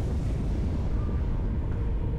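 Low, sustained rumble of a large explosion.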